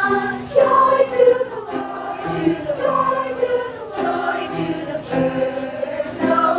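Children's choir singing a medley of Christmas songs with keyboard accompaniment.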